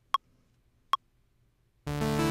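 Two short, pitched metronome clicks about three-quarters of a second apart: Ableton Live's count-in before recording. Near the end, a Dave Smith hardware synthesizer comes in loudly, playing several notes at once.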